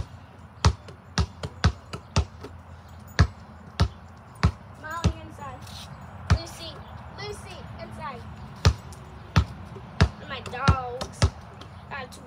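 Basketball dribbled on a concrete driveway: sharp bounces at an uneven pace, sometimes two or three in quick succession, with a pause of about two seconds midway.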